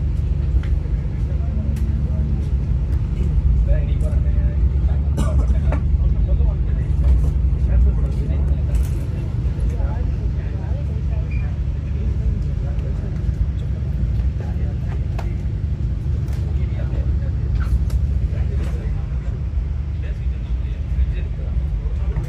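Steady low rumble inside the passenger coach of a moving Vande Bharat electric train, with indistinct passenger voices in the background.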